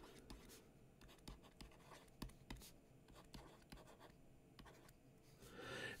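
Near silence with a few faint, irregular ticks and light scratches of a stylus handwriting on a tablet screen.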